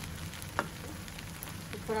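Pan mee noodles with prawns sizzling in a non-stick wok while a spatula stirs them, with one sharp tap of the spatula against the pan about half a second in.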